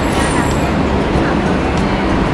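Busy city street traffic: a steady rumble of engines and tyres.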